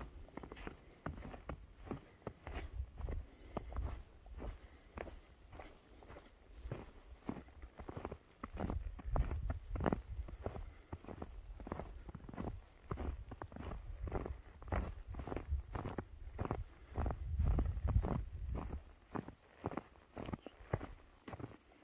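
Footsteps crunching through deep fresh snow at a steady walking pace, about two steps a second.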